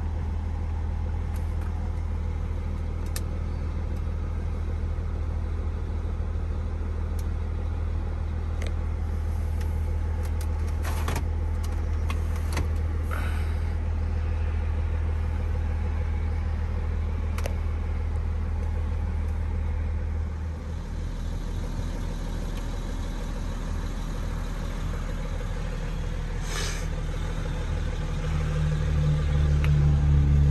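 2012 BMW X5 diesel idling, heard from inside the cabin as a steady low hum, with a few handling clicks in the middle. The hum changes about twenty seconds in and grows louder near the end.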